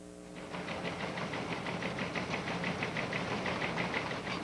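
A steady mechanical clatter of about six to seven strokes a second, like a press or teleprinter sound effect, starting about half a second in.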